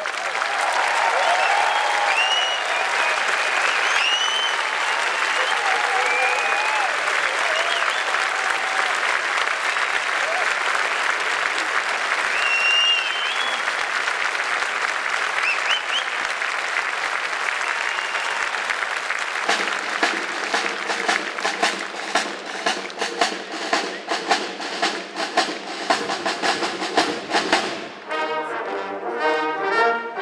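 Audience applauding a brass band, with whistles and cheers. About two-thirds of the way in, the band strikes up again and the crowd claps along in time. Near the end the clapping stops and the brass band plays on alone.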